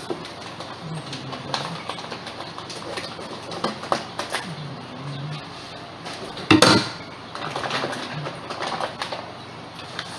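Plastic fish-shipping bag and scissors being handled, a scattered run of small rustles and clicks, with one loud sharp snap about six and a half seconds in.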